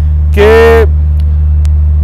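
A man's voice holding one drawn-out syllable, then pausing, over a loud steady low hum.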